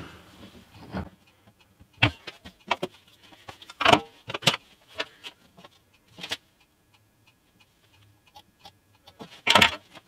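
Scattered light clicks and taps of hand tools being picked up and handled at a wooden workbench, with one louder brief noisy sound near the end.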